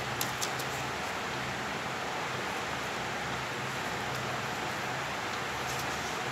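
Steady background hiss with a faint low hum, and a few soft crinkles of paper being folded by hand near the start.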